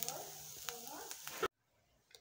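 Minced beef and parsley sizzling faintly in a pan on reduced heat, with a couple of light clicks, under faint background voices. The sound cuts off suddenly to near silence about one and a half seconds in.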